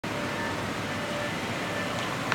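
Steady background noise with a few faint, high, steady hums: the room tone of a large showroom.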